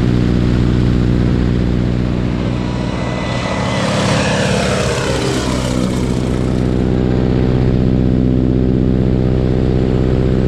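Boeing Stearman biplane's radial engine and propeller running steadily in flight, heard close up with air rushing past the microphone. A louder rushing noise with a falling pitch swells up about three seconds in and fades out a few seconds later.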